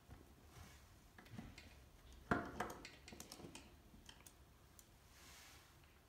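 Faint scattered clicks of a screwdriver working the screws of a metal reed gouging machine, with one sharper click a little over two seconds in.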